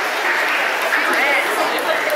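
Audience applauding, with voices calling out over the clapping.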